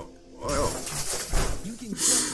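A harsh, noisy crash like something smashing, starting about half a second in and lasting over a second, mixed with scraps of voice.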